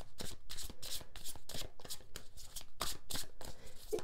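A deck of tarot cards being shuffled by hand: a quick, irregular run of short, crisp card-on-card slaps as the packets are worked together.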